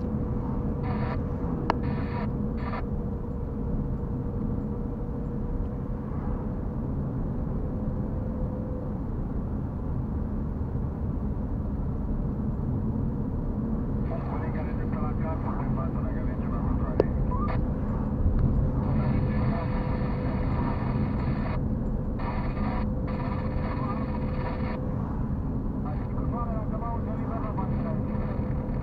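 Steady low engine and tyre rumble inside a moving car's cabin, picked up by a dashcam, with a thin steady whine above it. A voice is heard faintly at times in the second half.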